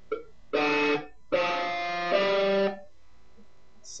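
Sampled guitar sound from the SampleTank software instrument, played from a MIDI pattern in FL Studio: three held chords, the last two back to back, then a pause.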